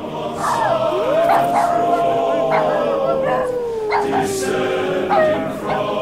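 Dogs barking and howling over music: one long howl rises about a second in and slowly falls over the next four seconds, with short sharp barks around it.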